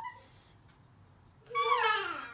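A toddler's high-pitched, sing-song vocalizing with a gliding pitch, starting about one and a half seconds in after a quiet moment.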